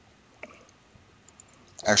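A single soft computer mouse click about half a second in, followed by a few faint ticks; a man's voice starts speaking near the end.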